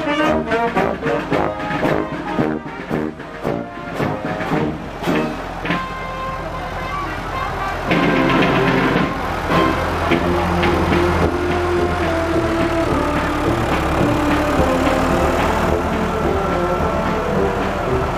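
A marching brass band plays with a regular beat: sousaphone and saxophones, fading as it moves off. About eight seconds in, a tractor engine takes over with a steady low hum, with more music over it.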